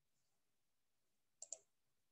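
Near silence, broken about one and a half seconds in by a brief, sharp double click.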